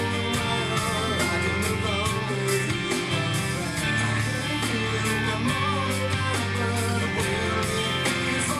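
Amplified electric guitar playing hard-rock guitar parts, mixing held notes with quickly picked passages.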